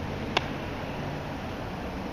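Steady indoor room tone, a low hum under a hiss, broken by one sharp click about a third of a second in.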